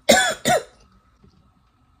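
A young woman coughs twice in quick succession, both coughs within the first second.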